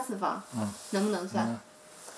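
A woman speaking in Chinese, asking a question; her voice stops about one and a half seconds in, leaving faint background hiss.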